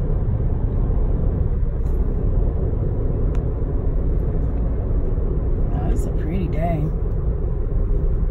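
Steady road noise inside a moving car's cabin, an even low rumble without breaks.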